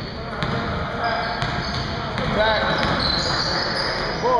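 A basketball being dribbled on a hardwood gym floor, with short high sneaker squeaks from players moving on the court, heard in the echo of a large gymnasium.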